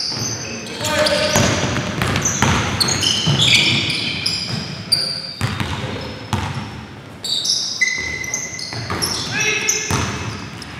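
Basketball game on a gym's hardwood court: many short, high-pitched sneaker squeaks as players cut and stop, with the ball bouncing on the dribble, all ringing in a large hall.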